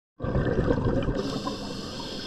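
Scuba regulator breathing heard underwater through a housed camera: a burst of exhaled bubbles burbling, then a steady hiss of inhalation through the regulator starting about a second in.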